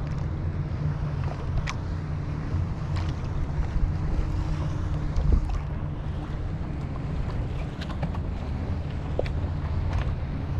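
Wind buffeting the microphone over water lapping against a moving kayak's hull, a steady rumble with a few sharp light clicks scattered through it. A faint hum sits under it in the first half.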